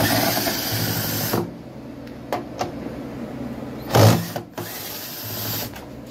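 Cordless drill-driver running in short runs as it backs screws out of a washing machine's plastic tub: one run of about a second and a half at the start, a loud short one about four seconds in, and another near the end, with a few knocks in between.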